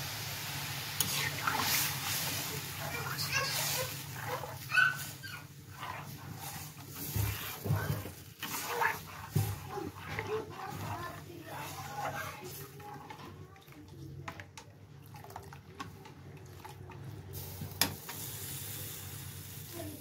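Metal ladle stirring thin kadhi batter of yogurt and gram flour in a metal kadai: irregular scrapes and clinks of the ladle against the pan with the liquid sloshing, over a steady low hum.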